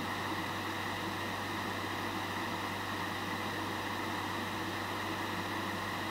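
Steady background hiss with a low hum and faint steady tones, unchanging throughout, with no distinct events: room tone.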